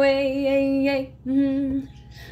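A cappella female voice holding one long sung note, breaking off about a second in, then singing a second, shorter note at the same pitch.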